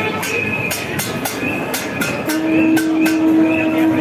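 A marching street crowd with loud, regular beats about twice a second and a long held horn-like note that starts a little after halfway through.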